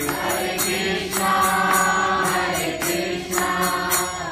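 A man's voice singing a slow Hindu devotional chant into a microphone, holding long notes and sliding between them, over a steady low drone, with small hand cymbals keeping an even beat of about three to four strokes a second.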